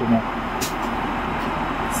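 Steady rushing noise of an airliner cabin in flight, engine and airflow noise at a constant level.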